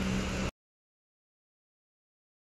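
Dead silence: about half a second in, the sound track cuts out abruptly, ending a steady low hum and the tail of a voice.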